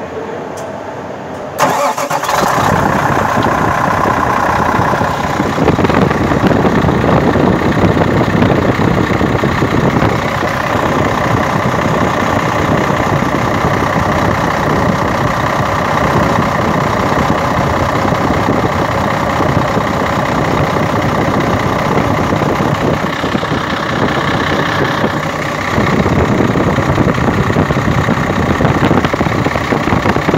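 Cummins diesel engine starting suddenly about one and a half seconds in, then idling steadily with the TM21 AC compressor turning on its second 6PK belt from an added crankshaft pulley: its first start after the compressor drive was fitted. The running sound grows louder about 25 seconds in.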